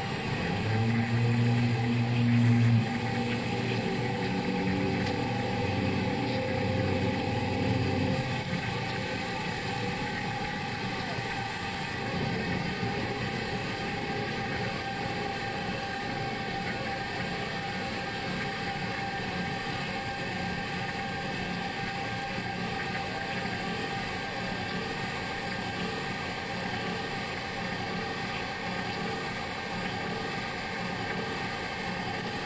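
Distorted electric guitar through arena amplification, holding low ringing notes for about the first eight seconds. After that a steady wash of crowd and amplifier noise fills the hall.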